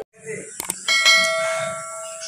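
A bell struck once, ringing on with several clear overlapping tones that slowly fade, after a couple of short clicks.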